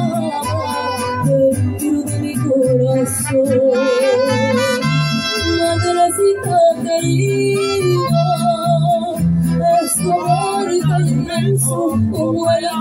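Mariachi band playing an instrumental passage between sung verses: saxophone carrying the melody with a wavering vibrato over a steady guitarrón bass pulse and strummed guitar chords.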